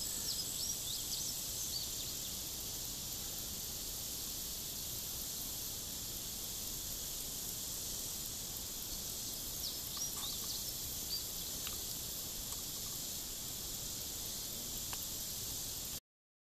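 Outdoor background on a sunny lawn: a steady high insect buzz, with a few short bird chirps near the start and again about ten seconds in.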